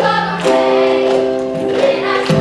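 A group of girls singing together in long held notes, the chord changing about half a second in, with a few sharp taps of plastic cups on the stage floor.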